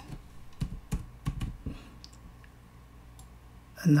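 Computer keyboard typing: about half a dozen quick keystrokes in the first two seconds, then a pause.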